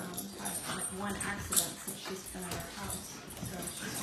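Two puppies play-wrestling, with short dog vocal noises; one brief louder sound comes about a second and a half in.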